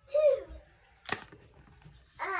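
A brief voice sound, falling in pitch, at the start, then a single sharp click about a second in.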